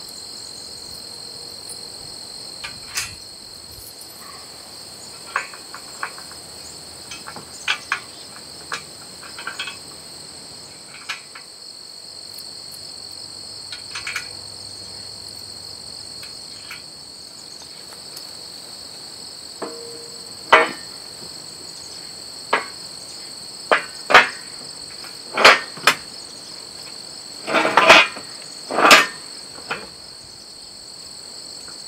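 Steel frame rails and carriage bolts clanking as a cultipacker frame is fitted together by hand: scattered sharp metal knocks, louder and more frequent in the second half, the loudest near the end. Under them a steady high chorus of insects.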